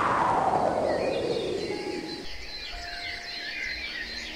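A descending whoosh of swept noise, falling steadily in pitch and fading out about two seconds in, over a soft bed of small bird chirps that carries on to the end.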